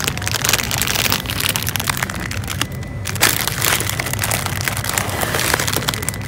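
Close rustling and crackling from handling, dense and even throughout, over a low steady hum.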